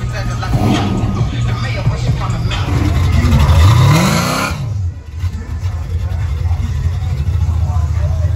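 Classic car engine running with a low rumble and revving once, its pitch rising over about a second, among crowd voices and music. The sound changes abruptly soon after, and a steady low rumble carries on.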